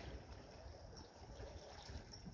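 Faint flowing river water, an even wash under a low rumble.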